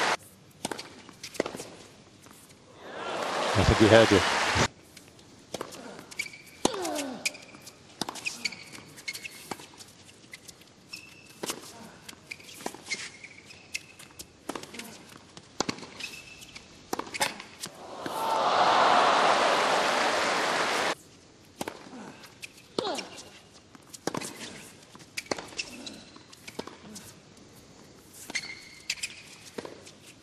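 Tennis points on a hard court: a series of sharp racket-on-ball strikes at irregular intervals with short player grunts between them. The crowd applauds twice, about three seconds in and again around eighteen seconds in, and each burst is cut off suddenly.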